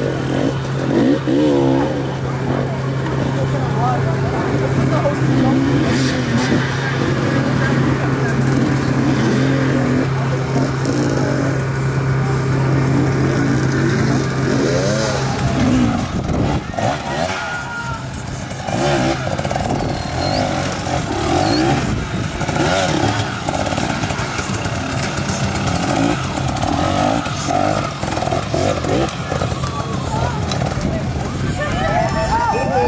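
Off-road dirt bike engine revving, its pitch rising and falling with the throttle as it is worked slowly over logs and rocks, with people talking in the background.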